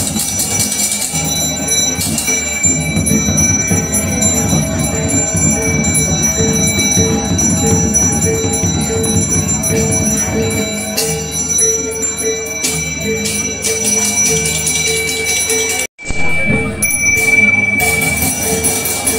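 A Balinese priest's small brass hand bell (genta) is rung continuously, giving a steady high ringing tone. Beneath it are a murmur of voices and a lower note pulsing about twice a second. The sound drops out for an instant near the end.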